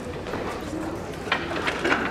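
Two short, soft low notes from a recorder being tried out before the ensemble plays, over a general murmur, with a few knocks from stage movement near the end.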